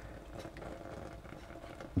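Faint steady sound of water simmering in a pot under a metal steamer basket of diced potatoes. A knife poking the cubes and touching the basket gives a few soft taps.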